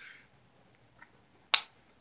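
A single sharp click about one and a half seconds in, preceded by a fainter tick, in an otherwise quiet room.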